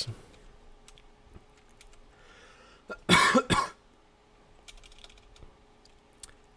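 Computer keyboard keys pressed lightly a few times while code is edited. A short, loud cough about three seconds in.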